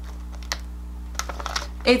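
Foil snack bag being handled close to the microphone: a few short, scattered crinkling clicks over a steady low hum.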